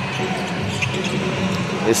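A basketball being dribbled on a hardwood court, over a steady bed of arena crowd noise, with a brief sneaker squeak about a second in.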